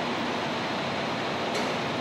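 Steady hiss-like static on the audio feed, caused by interference when the room's air conditioner came on.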